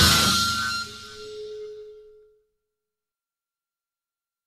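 The last chord of an organ-led heavy blues-rock song struck and ringing out, dying away within about two seconds to silence, with a single held note lingering briefly as it fades.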